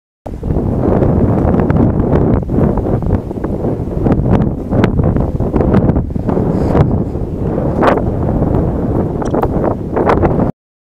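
Heavy wind buffeting the camera's microphone, a loud, uneven rumbling noise that swells and dips throughout.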